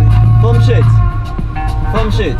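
Background music with a heavy bass that drops out about a second in, and a voice over it.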